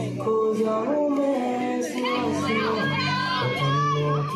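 A song with a singing voice over steady music.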